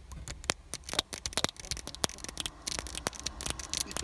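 Razor blade scraping a vignette sticker off the glass of a car windscreen: a rapid, irregular run of short scratches and clicks as the sticker is lifted away.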